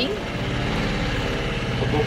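Engine of a small canopied backwater cruise boat running steadily, a low even hum.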